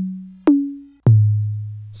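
808 bass sample in the Maschine sampler, played from the keyboard at different pitches. A note is already ringing out, a higher note sounds about half a second in, and a lower one about a second in. Each starts with a click and a steady tone that fades.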